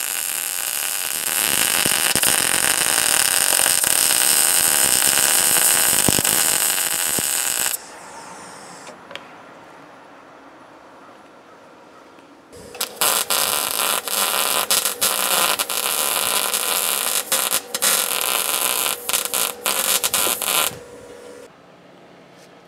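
MIG welder arc crackling and sizzling as it lays a continuous seam weld along steel plate. There are two runs: one of about eight seconds, then a pause of about five seconds, then a second run of about eight seconds broken by a few short stops.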